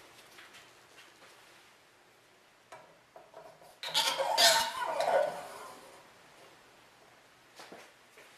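Handling noise of hard parts and tools on a workbench: a few light clicks about three seconds in, a louder clatter lasting about a second and a half soon after, and two short clicks near the end.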